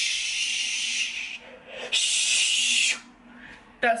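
A woman's voice making a long "shh" hiss in imitation of a can of hairspray being sprayed heavily, then a second, shorter "shh" about two seconds in.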